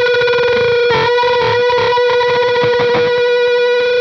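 Distorted electric guitar playing a unison bend on the note B: the second string's 12th-fret B is held while the third string's 14th-fret A is bent up to meet it, and the two pitches beat against each other as they fight. One long sustained note, with a brief waver in the bend about a second in.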